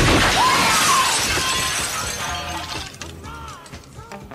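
A sudden loud crash with a shattering noise that dies away over about two and a half seconds, with a faint wavering tone running through it, as part of a deathcore recording.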